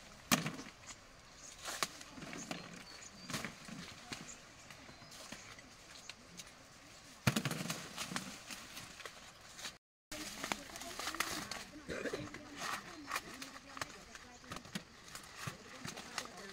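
Dry corn stalks, leaves and husks rustling and crackling as ears of corn are snapped off the stalks by hand, with sharper cracks every second or two and the loudest a little after seven seconds.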